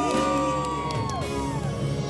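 Two women singing a ballad duet over backing music, holding a long note that falls away a little past a second in, while a panel whoops and cheers.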